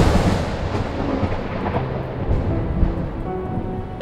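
A loud, thunder-like rumbling boom that peaks at the start and slowly dies away, with a hissing, rain-like texture, over quiet sustained music notes that come in during the second half.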